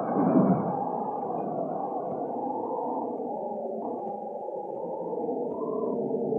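Film background score: low, muffled, sustained tones that waver slowly, dipping a little in the middle and swelling again near the end.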